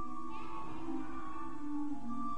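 Slow church music on the cathedral's pipe organ, long held notes moving from chord to chord.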